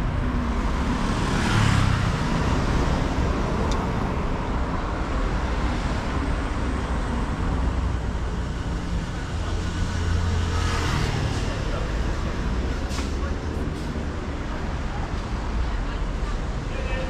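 Road traffic on a city street: a steady rumble of cars, with one passing close about two seconds in and another about eleven seconds in.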